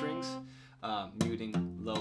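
Acoustic guitar strummed on an F chord, the chord ringing and fading over the first second, then strummed again about a second in. The low E string is kept quiet by the fretting-hand thumb over the neck.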